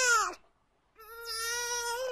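Newborn baby crying: a short, loud wail falling in pitch at the start, then a longer, steadier wail from about a second in.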